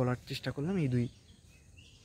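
A man talking for about a second, then a pause with only faint outdoor background noise.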